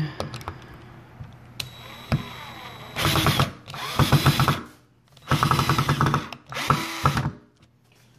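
Power drill driving a deck screw into a 2x4, run in four short bursts with a rapid pulsing as the screw bites into the wood.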